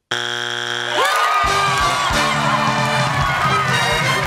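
A harsh game-show buzzer sounds for about a second, then upbeat theme music with a steady beat plays over a cheering crowd.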